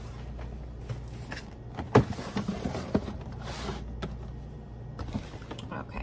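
Cardboard pudding-cup boxes being handled and set onto a pantry shelf: scattered knocks and bumps, the loudest about two seconds in, and a short scraping slide a little after three seconds.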